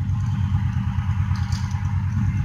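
A steady low machine drone with a fast flutter in it, like motor-driven equipment running.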